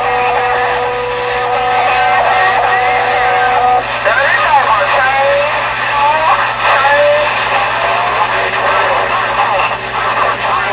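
CB radio receiver on long-distance skip: two steady whistle tones sit over the static for about the first four seconds, then garbled, warbling distant voices come through the hiss, over a steady low hum.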